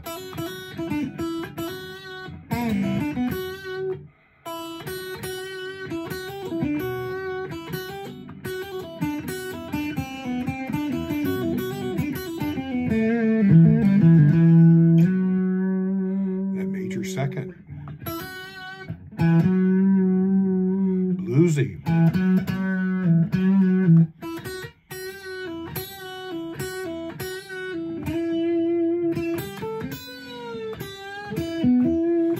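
Semi-hollow Telecaster-style electric guitar played solo: blues licks in E minor, with hammered-on notes, quick trills and a few string bends that glide in pitch. The playing stops briefly twice.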